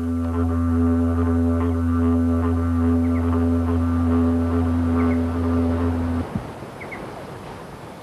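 Didgeridoo played as one steady low drone with a ring of overtones above it, sounded by the lips vibrating into a hollow branch. The drone holds unchanged, then stops abruptly about six seconds in, leaving only a faint background.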